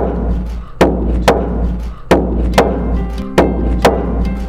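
Rawhide hand drum struck with a beater, deep booming beats coming in pairs about half a second apart, a pair roughly every second and a half, each beat ringing on.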